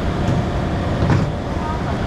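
Busy store background: a steady low rumble with indistinct voices, and a brief noise about a second in.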